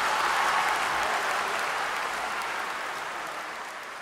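Audience applauding, the clapping slowly dying away.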